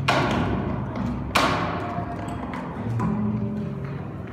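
Orgue de bois, an experimental wooden instrument of long suspended bent wooden slats and strings, being played: two sharp knocks about a second and a half apart, each ringing out, over low droning tones, with a short higher tone near the middle and a new low tone near the end.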